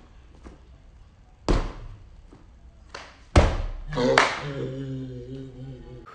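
Two thumps of bare feet on a folding gym mat, about two seconds apart with the second the louder, as a gainer swing through is taken off and landed. Then a long, drawn-out exclamation of 'oh'.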